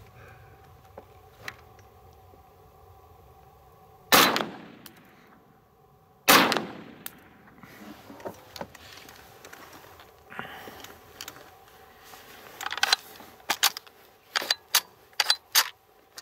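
Two shots from an Inland Mfg M1 Carbine in .30 Carbine, about two seconds apart, each followed by an echoing tail. Near the end comes a quick run of sharp metallic clicks and clacks as the carbine's action is worked by hand, in the middle of the gun's repeated malfunctions.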